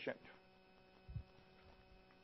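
Faint steady mains hum, with one soft low thump a little past a second in.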